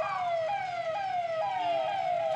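Police vehicle siren sounding a fast repeating call: a falling tone that starts over about twice a second.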